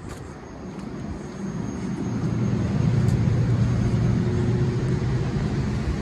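Stationary Nippon Sharyo Highliner electric multiple unit's onboard equipment humming, with a faint high whine; it grows louder over the first two or three seconds, then holds steady.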